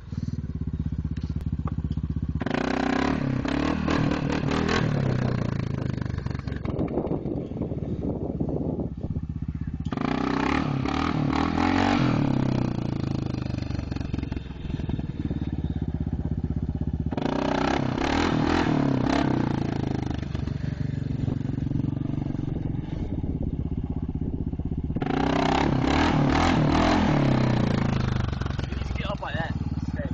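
Yamaha Grizzly 660 ATV's single-cylinder four-stroke engine revved hard about four times, each burst lasting a few seconds and falling back to a lower note in between.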